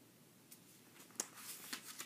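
Near silence: room tone, then a few faint mouth clicks and a soft breath in the second half, just before he speaks again.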